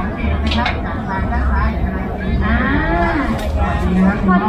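Voices at a busy food stall, with one drawn-out voice rising and falling in pitch about two and a half seconds in. A few sharp clinks come through, and a steady low hum runs underneath.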